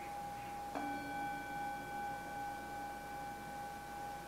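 A meditation bell struck once about a second in, ringing on with several tones over a steady tone that was already sounding. It closes the meditation practice.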